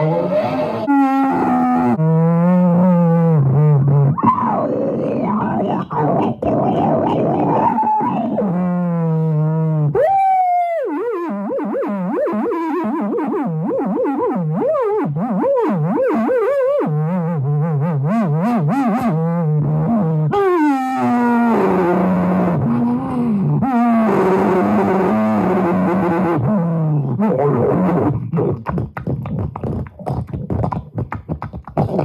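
A man's voice singing a wordless, wavering tune into a microphone, amplified through a Monster portable speaker. It holds low notes and sweeps sharply up to a high pitch about ten seconds in.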